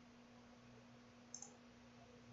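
Near silence with a faint steady hum, and a short computer mouse click about one and a half seconds in.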